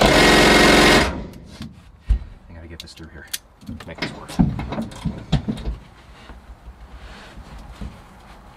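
Cordless impact driver hammering in one loud burst of about a second, then stopping suddenly. After it come scattered knocks and clicks of hand tools and metal parts being handled.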